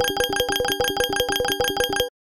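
Slot-machine reel-spin sound effect: a fast, even run of bell-like dings, about ten a second, over a steady ringing tone.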